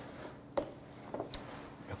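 Faint handling sounds of chopsticks picking up a green chili pepper and working food at the table: a few short, soft ticks over quiet room tone.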